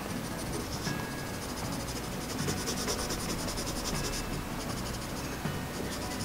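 Pencil scratching on paper in rapid, closely repeated shading strokes, laying tone over the ink cross-hatching.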